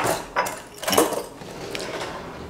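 A sharp knock as a kitchen item is set down on the stone counter, followed by a couple of softer clatters and rustles of things being handled and moved about.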